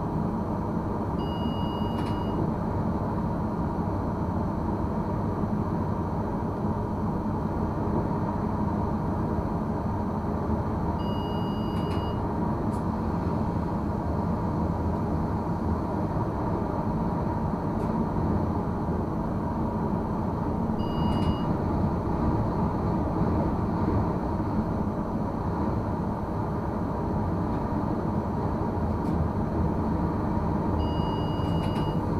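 Steady rumble of a RegioPanter electric multiple unit running at about 100 km/h, heard from inside the driver's cab: wheels on rail and running gear. Three short, faint two-tone beeps sound about ten seconds apart.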